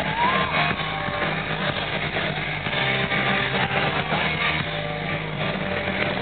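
Live rock band playing loudly through a festival PA, electric guitar strumming over bass, recorded on a camera microphone from inside the crowd, the sound dull and cut off in the treble.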